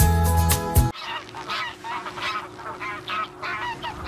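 Music that cuts off abruptly about a second in, followed by a flock of geese honking: many short calls, several a second, overlapping.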